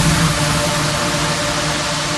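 Electronic trance music at a transition: the bass and melody drop out suddenly at the start. A loud, steady wash of white noise fills the mix, with faint held tones beneath.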